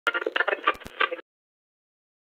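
Short intro sound effect for the logo animation, a busy, thin-sounding burst about a second long with a few sharp clicks, cutting off suddenly just past the middle.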